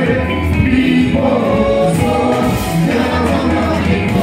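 Gospel music with a choir of voices singing over a band with a steady beat.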